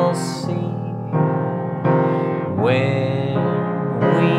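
A man singing slowly in a low voice over held grand piano chords, the song deliberately performed at half speed in a low register so that doubling its speed will raise it an octave into a squeaky chipmunk sound.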